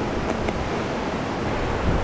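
Steady rush of a mountain brook pouring over granite into a plunge pool.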